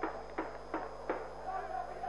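A drum in the stands beating a steady rhythm, about three beats a second, over faint stadium ambience. A steady held tone joins in near the end.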